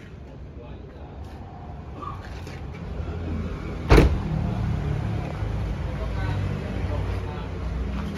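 A Toyota Kijang's door is shut once about halfway through, a single loud thump. There is shuffling movement before it and a low steady rumble after it.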